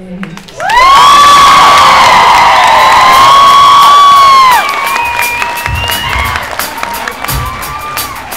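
Concert audience cheering and screaming as a song ends. Loud, high-pitched screams are held for about four seconds, then die down to quieter cheering with scattered sharp claps and cries.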